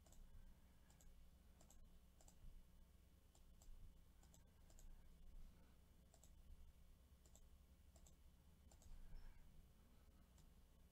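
Faint computer mouse clicks, a string of single clicks about every half second to second, over near-silent room tone.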